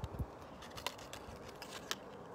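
Light clicks and ticks from hands handling a pair of freshwater pearl hoop earrings on their card, a few sharp ticks spread out, with low handling bumps near the start.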